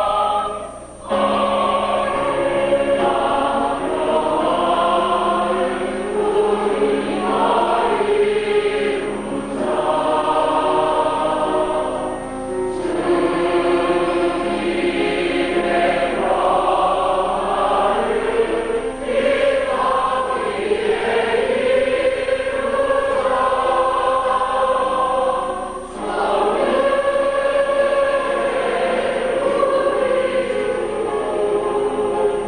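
Mixed choir of women and men singing a church choral piece, with a short break between phrases about a second in.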